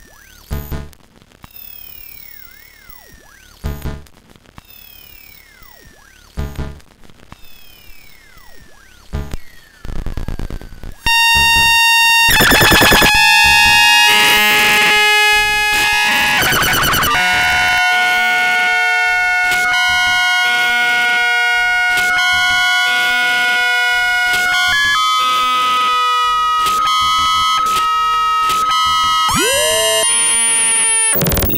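Ciat-Lonbarde Cocoquantus 2 looping sampler making raw electronic sounds: at first quiet, sparse clicks with falling pitch sweeps, then about eleven seconds in it jumps much louder into a dense layer of held electronic tones that step between pitches, chopped by rapid clicks.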